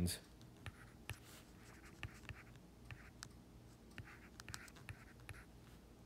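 Stylus tapping and sliding on an iPad's glass screen during handwriting: a scattered run of faint sharp clicks with soft scratchy strokes.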